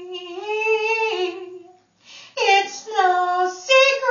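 A woman singing unaccompanied: a held, wavering melodic line, a short pause for breath about two seconds in, then the singing picks up again.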